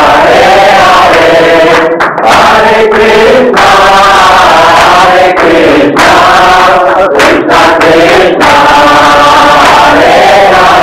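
A large group of voices chanting together in unison, loud and sustained, with short breaks between phrases.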